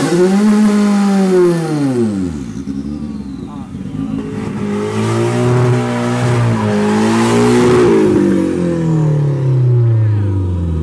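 Car engines revving at a burnout show: one engine revs high and drops back over the first couple of seconds, then a second run of revving builds from about four seconds in, holds unevenly and falls away near the end.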